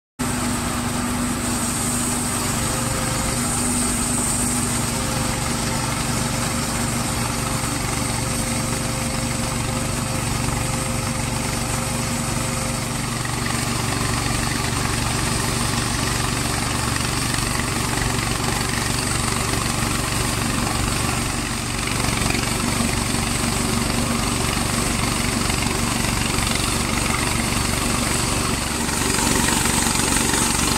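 Petrol engine of a Rhino 500 bandsaw mill running steadily under load as the blade cuts through a log, cutting in abruptly and growing a little louder near the end.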